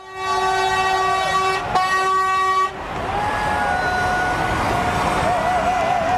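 A lorry's air horn sounds one long, steady blast that breaks off briefly less than two seconds in and stops just under three seconds in. It is followed by the noise of a crowd gathered outdoors, with a wavering tone over it.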